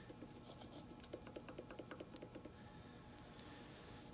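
Faint, quick, irregular light ticks and scratches, mostly in the first half, from fingers rubbing over the carbon-crusted top of a piston in a cast-iron engine block.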